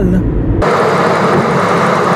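Steady rushing road and air noise of a car driving at highway speed, heard inside the cabin, setting in abruptly about half a second in.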